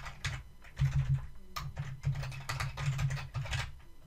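Keystrokes on a computer keyboard, a run of irregular clicks as an Excel formula is typed in.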